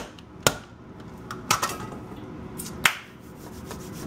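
Handheld herb chopper striking down through fresh herbs onto a paper plate on a counter: about five sharp knocks, spaced unevenly and thinning out toward the end.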